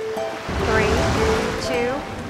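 Short musical logo jingle: held musical notes, then from about half a second in a rush of noise like ocean surf, with gliding pitched sounds over it.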